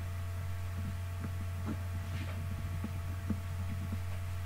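Steady low electrical hum, with a few faint small clicks scattered through it.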